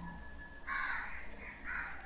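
A bird's harsh calls, several in quick succession, starting about a third of the way in.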